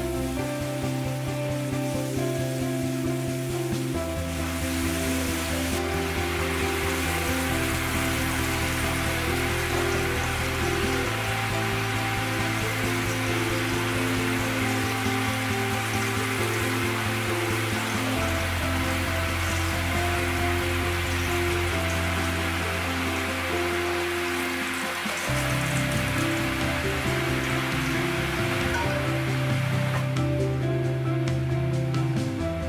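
Background music with slow, held bass notes over the steady sizzle of salmon fillets frying in oil and sauce in a pan. The sizzle grows fuller about four seconds in.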